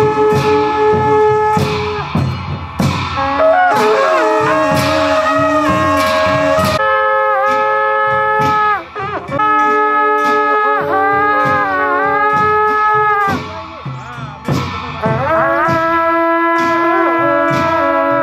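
Wind instruments playing long held notes that bend and slide in pitch, over a loose pattern of drum strikes, with short breaks in the melody about nine seconds in and again near fourteen seconds.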